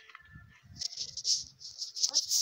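An enamel cup scooping and scraping through wet fruit pulp in a wooden mortar. Quiet at first, then hissy scrapes start a little under a second in, with soft knocks beneath.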